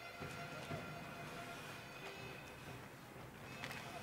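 Faint ice-hockey arena background during play: a low, even haze of crowd noise with faint music under it.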